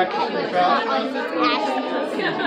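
Chatter of many people talking at once in a large, busy shop, with no single voice standing out.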